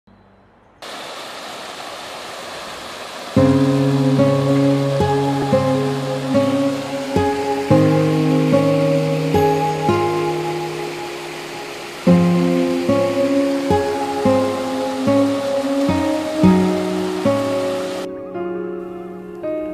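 Steady rushing of a rocky woodland stream. About three seconds in, instrumental background music joins it and carries on over the water noise, its notes changing every second or so.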